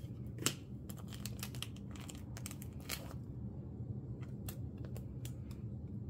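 Plastic binder sleeves and card holders crinkling and clicking as photocards are handled, with a sharper click about half a second in, over a steady low hum.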